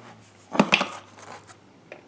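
A metal combination wrench clinking against the side cover and bar nuts of a Husqvarna 572xp chainsaw: one louder clatter about half a second in, then a few light clicks.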